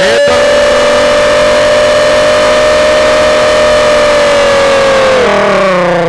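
A man's voice holding one long, loud, high-pitched call at a steady pitch for about five seconds, then sliding down near the end: a cricket commentator's drawn-out shout.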